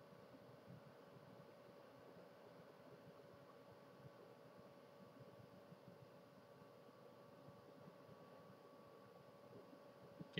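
Near silence: room tone, a faint hiss with a faint steady hum.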